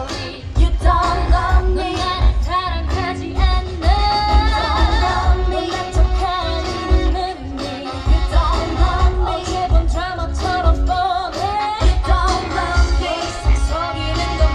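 K-pop song with female vocals over a heavy, pulsing bass beat, played through stage loudspeakers.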